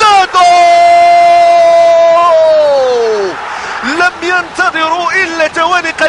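Football TV commentator's long drawn-out shout for a goal, held on one note for about two seconds and then sliding down in pitch, with crowd noise under its end. Rapid commentary resumes about four seconds in.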